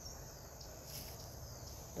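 Faint garden ambience: a steady high-pitched chirring of crickets over a low rumble.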